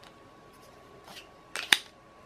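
A brief plastic scrape about a second in, then a sharp plastic click as an Insta360 One R camera is pressed and snapped into a 3D-printed PLA+ case, a tight fit.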